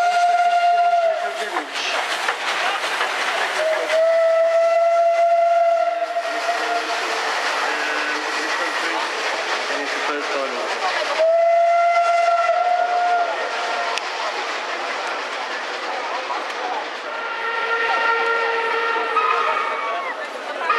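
Steam locomotive whistles blowing long blasts, three at one pitch about 2 seconds each, with a fourth whistle at a different, higher pitch near the end, over the steady noise of steam locomotives working past.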